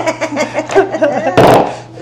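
People laughing, with a short, loud, noisy burst about one and a half seconds in.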